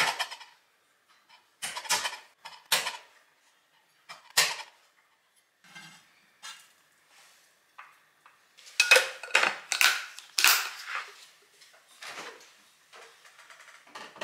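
Chef's knife crushing garlic cloves on a cutting board: a few sharp knocks, one to two seconds apart, as the flat of the blade is pressed down. About nine seconds in comes a burst of clattering as the knife scrapes the crushed garlic into a stainless steel tray.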